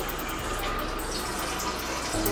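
A steady stream of liquid splashing into water in a toilet bowl, as of someone urinating.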